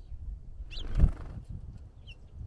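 Small birds on a platform feeder tray close to the microphone, giving low knocks and rustling as they feed. There is a short high chirp, then about a second in a louder flutter ending in a thump as another bird lands on the feeder.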